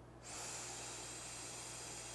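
A long, steady breath blown into the mouthpiece of a handheld breathalyzer to give a breath-alcohol sample: an even, airy hiss that starts a moment in and holds without a break.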